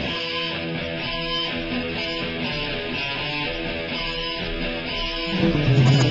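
Rock song recording in an instrumental passage led by guitars, with no singing and the low end pulled back. The full band with bass and drums comes back in, louder, near the end.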